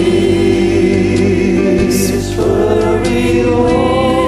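A woman and a man singing a song together in harmony, the man's voice layered in several parts like a small choir. They hold long notes, moving to a new chord about two seconds in.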